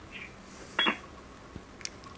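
A pause on an HF transceiver link with a short electronic chirp from the radio's speaker less than a second in, then a couple of faint clicks near the end.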